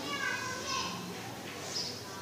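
Faint distant voices in the background, with weak rising and falling pitches and no clear words.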